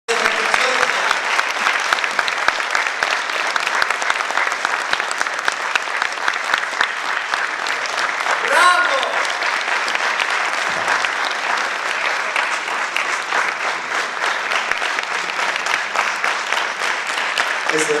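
Audience applauding steadily throughout, many hands clapping together. One short shout rises above the clapping about halfway through.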